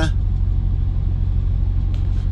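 A steady low background rumble, even and unchanging, with a faint hiss above it.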